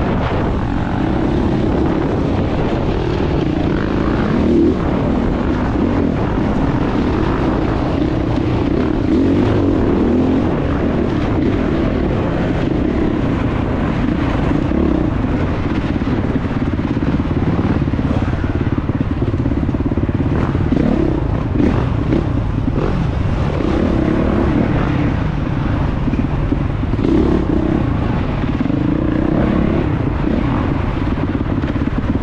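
Off-road dirt bike engine heard close up from the rider's helmet camera, running hard and rising and falling in pitch as the throttle is worked continuously over rough dirt and through tight woods, with occasional knocks.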